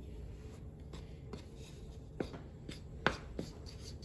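Wooden spoon scraping through dry flour in a stainless steel mixing bowl, with hands rubbing in the flour. Two sharper knocks of the spoon against the bowl come about two and three seconds in.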